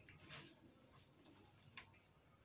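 Near silence, with two faint short rustles, about half a second in and near the end, as leaf litter is scooped out of a plastic bucket.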